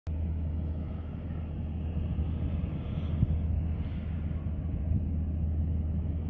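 Steady low outdoor rumble, with one short knock about three seconds in.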